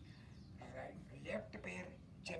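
A person speaking quietly and indistinctly, starting about half a second in, over a steady low background hum.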